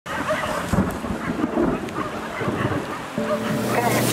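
Thunder rumbling over steady rain, with several low rolls in the first second and a half; near the end a steady low hum and a voice come in.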